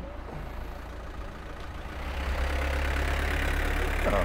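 A light truck's engine running close by, a steady low rumble that grows louder about two seconds in.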